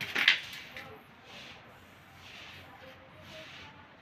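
Hands working a punctured bicycle inner tube at the wheel rim: a few sharp clicks near the start, then several faint, short rubbing noises.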